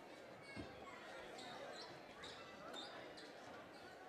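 Faint chatter of spectators in a gymnasium, with one low thump about half a second in.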